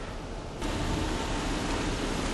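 Steady rushing background noise with camera handling, which grows louder and fuller a little over half a second in as the car's door is opened to the outside.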